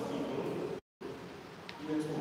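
A man's voice through the lectern microphone, drawn out in pitched, voice-like phrases. Just under a second in it is cut by a short, complete dropout in the audio.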